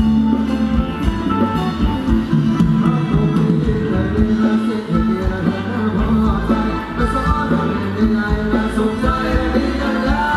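Live band playing an upbeat Thai ramwong dance song, with singing over a steady beat.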